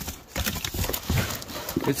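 Cardboard box being slit open with a knife and its flaps pulled back: a run of scrapes, knocks and rustling of cardboard.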